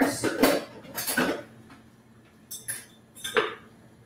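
Blender parts and other kitchenware clattering and clinking on a counter as a disassembled blender is gathered and set up: several separate knocks, the loudest near the start and a sharp one about three and a half seconds in.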